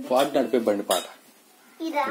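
A young boy's voice in short pitched syllables for about a second, then a pause before his voice starts again near the end. A few sharp clinks sound over it.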